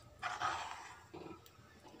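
Wooden spoon stirring thick, creamy dal makhani in a metal kadai: two short, soft stirring sounds, the first about a quarter second in and a fainter one just past a second.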